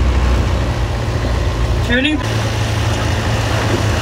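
Engine of an open sightseeing boat running with a steady low hum under a hiss of wind and water. A guide's voice briefly says one word about halfway through.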